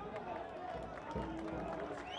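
Open-air football stadium ambience: scattered shouts and voices from players and a sparse crowd over a steady background murmur.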